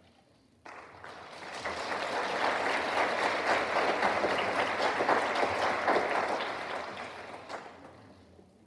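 Audience clapping in applause. It starts abruptly just under a second in, swells to full strength, then dies away near the end.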